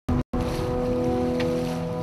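Sea water rushing along a sailing boat's hull, with wind, under a steady held chord of music. The first moments come in short chopped bursts before the sound settles.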